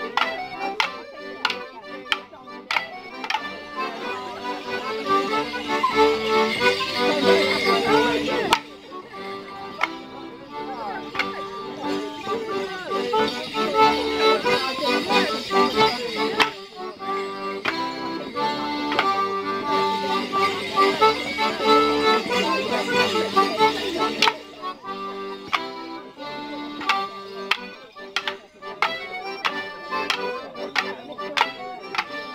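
A Morris dance tune played live for a stick dance. The dancers' wooden sticks clack sharply against one another, most thickly at the start and near the end. Between the stick passages the bells strapped to their shins jingle in bursts as they step.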